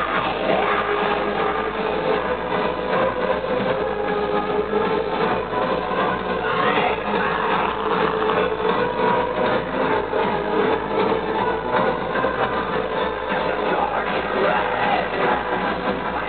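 Aggrotech (harsh electronic industrial) music played live at loud, steady volume through a concert PA.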